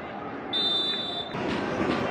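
A referee's whistle blown once, a steady shrill note lasting under a second, over the open-air noise of players' voices on the pitch. About a second and a half in the background changes abruptly and gets louder.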